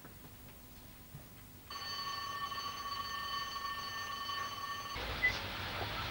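An electric school bell rings steadily for about three seconds, starting a couple of seconds in, and cuts off suddenly. Street background noise follows near the end.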